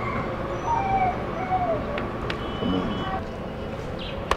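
Steady outdoor background hum, like distant traffic, with a few short gliding chirps and two faint clicks about halfway through.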